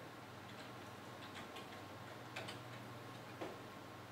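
A few faint, irregular clicks from a computer keyboard and mouse as a setting is entered, the loudest about two and a half and three and a half seconds in, over a steady low hum.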